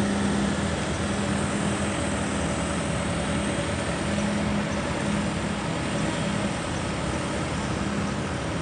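A steady engine hum, idling and unchanging, over a constant wash of city traffic noise.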